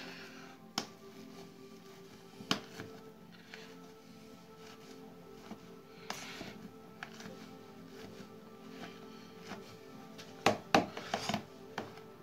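Background music with steady tones, over which a wire potato masher knocks and squishes against the bowl as cubed potatoes are mashed into purée; a few single knocks early on, then a quick cluster of louder knocks near the end.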